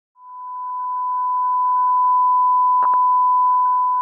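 A steady electronic pure tone, like a long test-tone beep, fading in over the first two seconds and holding, with two quick clicks close together just before three seconds in.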